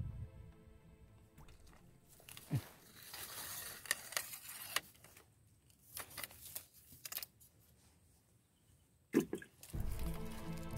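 Dry grass and leaf litter crunching and rustling in irregular bursts, with a few sharp clicks; the loudest burst comes just after nine seconds.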